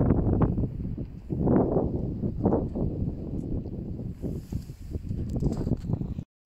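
Wind buffeting the microphone on an exposed mountainside: a low rumble that swells in irregular gusts.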